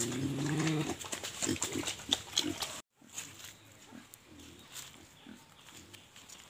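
Piglets grunting: one long grunt, then a few short ones, stopping abruptly about three seconds in. Only faint sounds follow.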